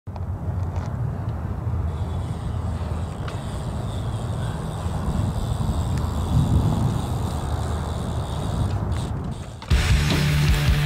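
BMX bike tyres rolling over concrete, a steady low rumble with a few light clicks and a louder swell about six seconds in, as the bike comes off a ledge. Just before the end, loud heavy rock guitar music cuts in suddenly.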